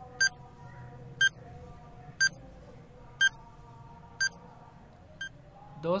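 Quiz countdown timer beeping once a second: six short, high pitched electronic beeps, the last one softer, ticking off the six seconds given to answer.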